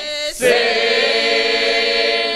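Mixed men's and women's Kuban Cossack folk choir singing a cappella. There is a brief break between phrases about a third of a second in, then a new phrase starts on long held notes.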